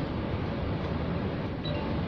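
Steady meeting-room background noise: an even hiss over a low rumble.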